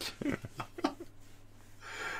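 Soft breathy laughter trailing off: a few short chuckles in the first second, then a soft breath near the end.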